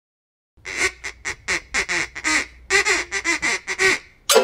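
A hand-blown goose call honked in a rapid string of short, slightly falling honks, about five or six a second, starting about half a second in.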